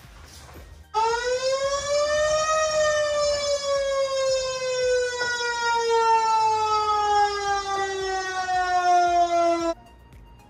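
Fire truck siren wailing: one long tone that rises for a second or two, then slowly falls in pitch and cuts off suddenly near the end.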